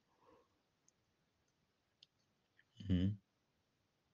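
A pause in a quiet small room with a few faint clicks, then a man's short vocal sound, under half a second long, about three seconds in.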